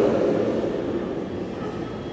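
Audience applause dying away, the noise fading steadily over the two seconds into the hall's low background murmur.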